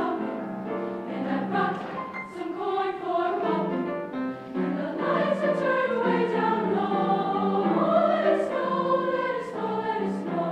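High school choir singing, the voices holding and moving between sung notes throughout.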